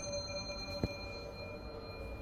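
The ringing tail of a single elevator arrival chime, a bell-like ding that sustains and fades slowly. A sharp click comes about a second in.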